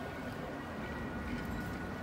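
Steady city street background noise, a low traffic hum with a faint thin high tone running through it.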